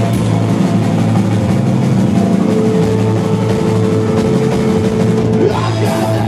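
Live rock band playing an instrumental stretch: electric guitars, bass and drum kit, loud and steady. One high note is held from about halfway through and drops away shortly before the end.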